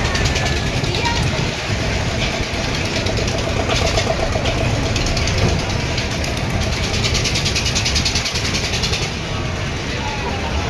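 Spinning fairground ride in motion: a loud, steady rumble with stretches of fast rattling, over the voices of people around.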